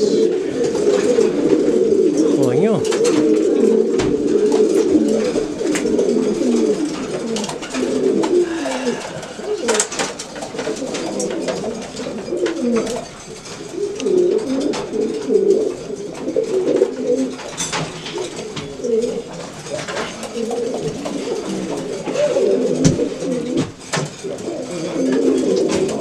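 Many caged domestic pigeons cooing at once, a continuous overlapping chorus, with scattered sharp clicks and knocks.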